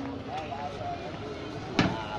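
Street noise with people's voices talking on a town road, and one sharp knock near the end.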